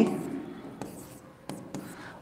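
Pen or stylus writing on an interactive smart-board screen: faint scratching strokes with a few short sharp taps on the glass.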